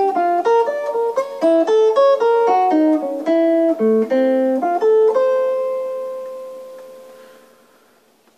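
Hollow-body electric archtop jazz guitar with a clean tone, playing a fast single-note eighth-note line over a II–V–I in F (Gm7, C7, Fmaj7) built from triads. About five seconds in the line lands on a long held note that rings and slowly fades out.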